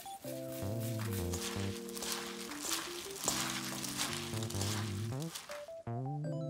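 Background music of held keyboard notes, over the wet rustling and squishing of a plastic-gloved hand tossing buckwheat noodles with sour kimchi in a stainless steel bowl; the mixing sound stops shortly before the end.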